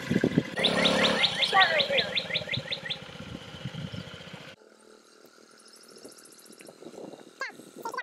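A bird singing a fast trill of repeated downward-sliding chirps for about two seconds, over the low running of the Honda Ruckus scooter's small engine. The low engine sound cuts off suddenly a little past halfway, leaving only faint high ticking.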